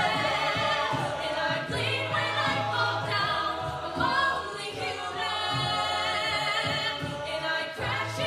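An a cappella group singing in harmony, with a female lead voice, a low sung bass line and vocal percussion keeping the beat.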